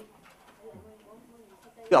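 A short pause in men's French speech from a film soundtrack played over loudspeakers, holding only faint low pitched background sounds; a man's voice comes back right at the end.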